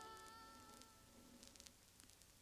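Faint tail end of a song on an old record: the last held chord fades away within about the first second, leaving only surface hiss with a few brief clicks.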